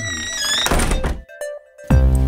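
Cartoon sound effect of wooden window shutters swinging shut, a thunk about half a second to a second in, under a short bright music sting.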